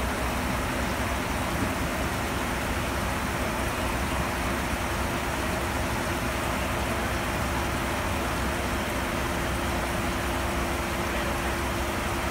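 Steady rushing noise of water circulating through a plumbed aquarium holding system, with a faint steady pump hum underneath.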